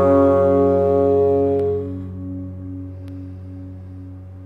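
The final chord of a song on a Gretsch hollow-body guitar ringing out and dying away over about two seconds. A low, faint steady tone stays underneath as the chord fades.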